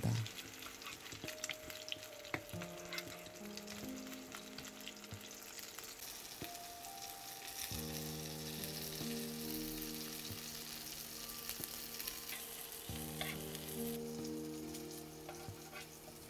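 Egg-battered jeon sizzling steadily in oil in a frying pan, with a few light clicks. Soft background music of held notes comes in a few seconds in and grows fuller about halfway through.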